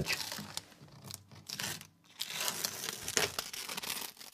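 Masking tape being peeled off a wall, ripping and crinkling, in two goes with a short pause about two seconds in.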